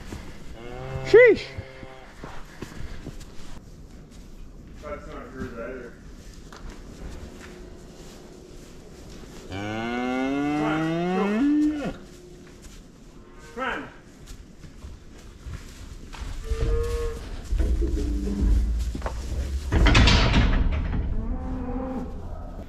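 Cattle mooing in a calving pen: a short high call about a second in, then a long moo rising in pitch around the middle, followed by a few shorter calls. Near the end comes a louder low rumbling stretch.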